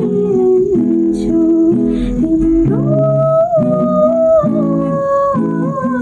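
A woman singing a Nepali song while playing chords on an acoustic guitar with a capo. About three seconds in, her voice rises to a long held high note that sinks slightly toward the end.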